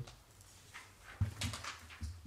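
A quiet pause in a large committee room: faint room tone with a steady low hum and a few soft, short noises, one near the start of the second second and two more after it.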